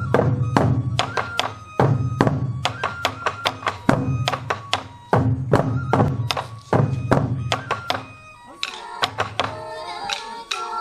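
Sansa odori festival music: large waist-slung sansa taiko drums struck with wooden sticks in a fast, steady rhythm, each beat a deep boom with a sharp stick click, over a held flute melody. Near the end the drumming thins and voices come in singing.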